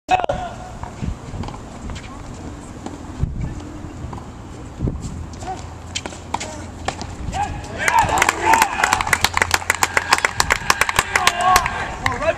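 Tennis ball struck by racquets a few times during a doubles rally, single sharp pops a second or more apart. From about eight seconds in, spectators clap and shout loudly as the point ends.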